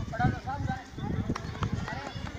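Schoolchildren's voices chattering over a run of soft low thuds, outdoors on open ground.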